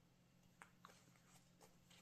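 Near silence: a faint low steady hum, with a few soft ticks and rustles of cotton fabric being folded and pinned by hand.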